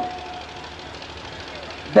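Steady background hiss, the room and recording noise of a lecture, after a man's voice trails off in the first moment.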